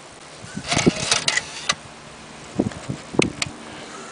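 Car dashboard CD player taking in a disc pushed into its slot: a short run of clicks and clatters from the loading mechanism, then a second group of clicks near three seconds in.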